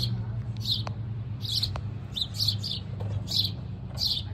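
A small bird chirping repeatedly, short high chirps about twice a second, over a steady low hum.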